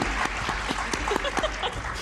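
Studio audience applauding, a steady patter of many hands clapping, greeting a contestant's matched answer on a TV game show.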